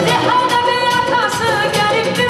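Live wedding dance music played loud through a PA: a woman sings into a microphone over an amplified band with a steady beat. Her voice comes in right at the start and holds long, bending notes.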